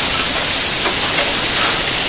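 Flour-dredged Dover sole frying in smoking-hot oil in a sauté pan: a loud, steady sizzle.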